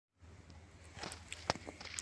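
Faint handling noise of a phone as recording begins: a few soft clicks, the sharpest about one and a half seconds in, over a low steady hum.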